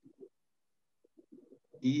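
Near silence: room tone with a few faint, short low sounds, then a man's voice begins near the end.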